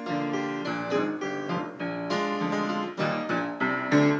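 Piano playing the lively introduction to a congregational chorus: a run of chords and melody notes, each struck crisply.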